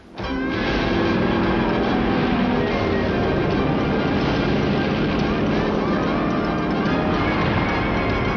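Film soundtrack of a naval battle at sea: music over a steady din of battle noise, cutting in abruptly at the start.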